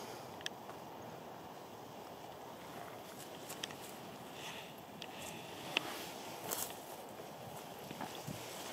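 Faint footsteps on dry, burned grass and twigs, with a few light crackles and snaps scattered through, over a steady low hiss.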